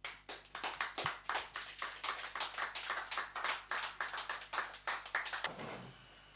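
A small audience clapping, quick dense claps that stop sharply about five and a half seconds in.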